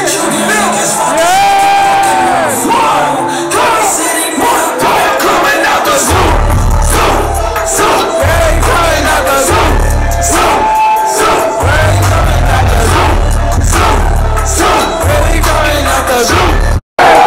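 Loud concert music through a venue's sound system, with a crowd shouting along. A heavy bass line comes in about six seconds in and drops out briefly a few times.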